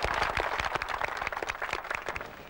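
Crowd applauding: a dense patter of many hands clapping that thins out and fades over the two seconds.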